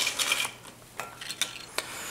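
Corn tortilla chips being handled and set down in a glass bowl: a brief scratchy rustle, then a few light clicks of chips against the glass.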